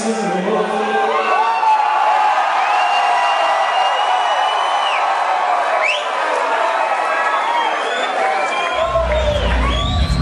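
Concert crowd cheering and whooping after a rock song, many voices yelling at once, with a long high whistle in the middle. Near the end, deep bass music comes in.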